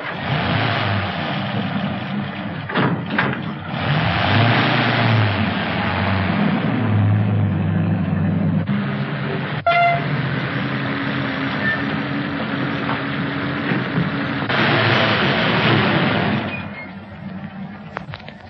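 Engine of a 1930s automobile running as the car pulls away and drives off, under the hiss of an old optical soundtrack. A single sharp click comes about halfway through.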